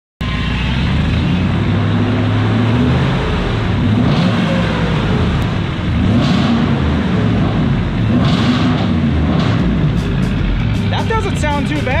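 Supercharged 5.4-litre V8 of a 2002 Ford F-150 Harley-Davidson running very loud, with short surges every couple of seconds.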